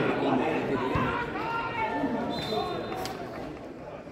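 Indistinct talk from several nearby spectators at a football match, with a thump about a second in and a short high tone a little past halfway.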